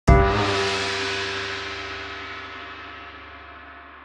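A single gong-like hit from a channel-intro sound effect, struck just after the start and ringing on with many tones, slowly fading away.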